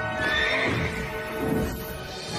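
A horse-like whinny from the flying pegasus about a quarter-second in, over film score music of sustained held notes.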